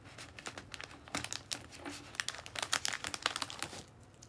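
Plastic snack packaging crinkling and crackling in irregular bursts as a bag of setsubun roasted beans is handled and rummaged through.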